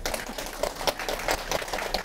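An audience clapping in a room: a dense, irregular patter of many hands.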